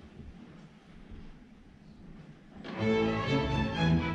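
Quiet hall noise, then a string orchestra comes in together about two and a half seconds in, bowed strings playing loudly in sustained chords.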